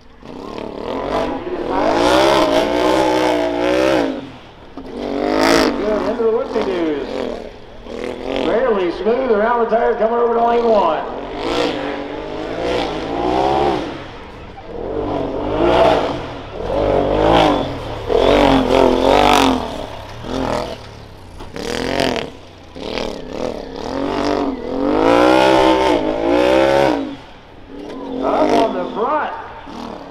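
Side-by-side UTV engine revving hard and backing off again and again as it runs a dirt obstacle course, its pitch climbing and falling over a second or two at a time as it goes over jumps and around obstacles.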